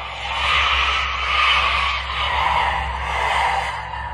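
A rushing, wind-like noise that swells and eases over a steady low hum.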